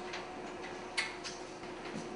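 Quiet room tone with a faint steady hum and a few light ticks, one sharper click about a second in.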